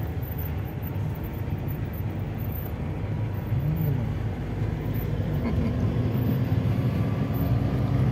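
A car's cabin while driving: the steady low rumble of the engine and tyres on the road surface, heard from inside, growing a little louder toward the end.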